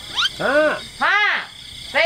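A person's voice making three short drawn-out vocal sounds, each rising and then falling in pitch.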